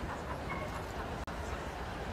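A dog whimpering with a short, high yip about half a second in, over steady background chatter.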